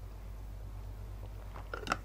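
Quiet room tone with a steady low hum, and a few faint clicks near the end.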